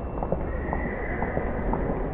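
Hard-soled footsteps on pavement: many short, irregular clicks from several people walking, over a steady low background rumble. A faint high whistling tone comes in about half a second in.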